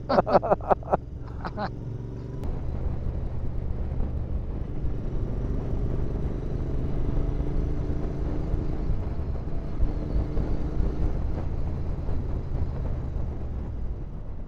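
Royal Enfield Interceptor 650's parallel-twin engine running at road speed, mixed with wind rush and tyre noise on a helmet or bike-mounted microphone. Laughter at the start.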